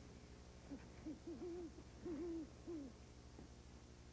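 An owl hooting: a faint series of about five low hoots, the middle two longer and wavering in pitch, over a steady low hum.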